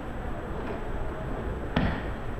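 Steady low rumble of a room with one sharp thump near the end.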